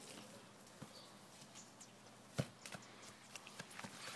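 A single sharp thud of a soccer ball being kicked, about two and a half seconds in, over a quiet backyard background, followed by a few faint light ticks.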